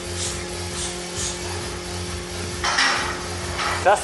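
A lifter's short, hissing breaths while he braces under a loaded barbell between squat reps, the loudest about three seconds in, over a steady low hum.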